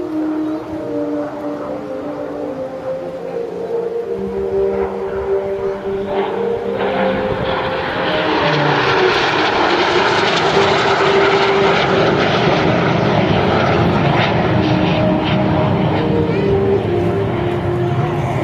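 Hawker Hunter F.58A jet flying past, the rush of its Rolls-Royce Avon turbojet building from about four seconds in and loudest in the second half before easing near the end.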